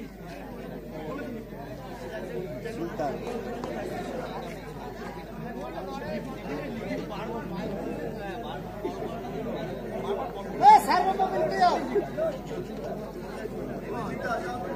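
Many people chattering at once, overlapping voices of players and onlookers, with a louder burst of voices about eleven seconds in.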